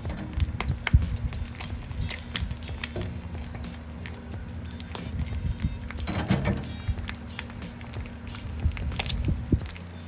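An egg frying in butter on a cast iron griddle: a sizzle with frequent short pops and crackles, under background music.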